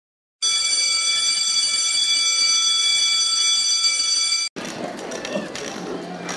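A bell rings steadily for about four seconds, then stops abruptly. Quieter bustle with a murmur of voices follows.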